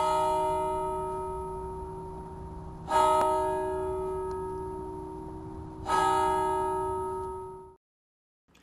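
A bell struck three times, about three seconds apart, each stroke ringing and slowly fading; the last ring cuts off suddenly near the end.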